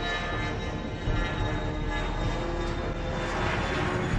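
Jet aircraft engine noise, a steady rushing sound that swells and brightens near the end.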